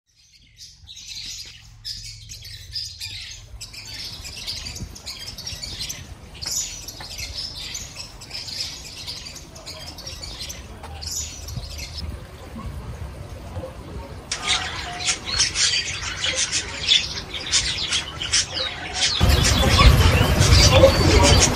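Small birds chirping and twittering in quick, repeated high chirps, which become louder and denser about fourteen seconds in.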